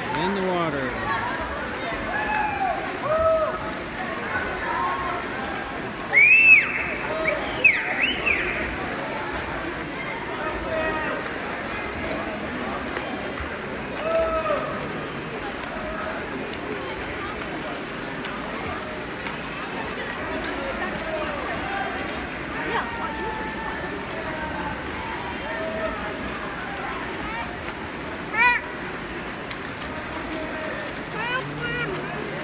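Spectators at a swim race shouting and cheering over a steady din of crowd noise and splashing water in an indoor pool. The loudest shouts come in a cluster about six to eight seconds in, with another burst near the end.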